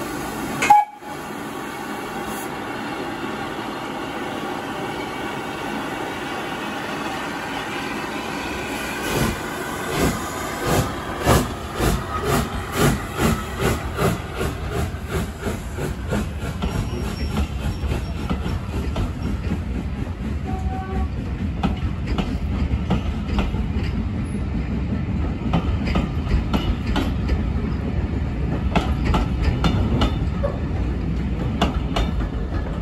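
Southern Railway Schools class three-cylinder 4-4-0 steam locomotive No. 30925 Cheltenham pulling away with its train: a brief sharp sound about a second in, then from about nine seconds distinct exhaust beats that come quicker as it gathers speed, giving way to the low rumble and clickety-clack of the coaches rolling past.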